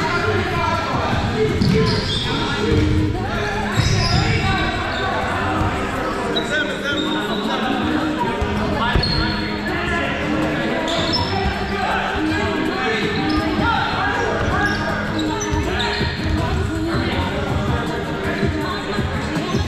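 Indistinct voices of players calling out across a large, echoing gym, with scattered thuds of foam dodgeballs bouncing and hitting players.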